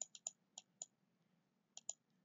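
Near silence broken by faint, irregular light clicks: a quick run of about five in the first second, then two more close together near the end.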